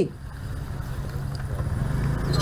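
Low, steady rumble of vehicle traffic, slowly growing louder.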